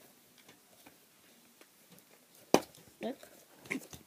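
Plastic dolls and toys being handled, with faint small taps, then one sharp knock about two and a half seconds in.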